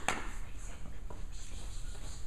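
A single sharp knock right at the start, then a steady low hum with faint scuffs and taps.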